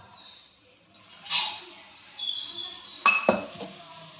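Granulated sugar poured between stainless-steel vessels, a short hissing rush about a second in, then two sharp metallic clinks of the steel tumbler against the steel kadai a little after three seconds.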